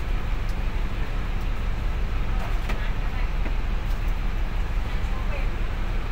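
Steady low rumble of a bus's idling engine heard from inside its cabin, with a few faint splashes of hot water poured onto the floor.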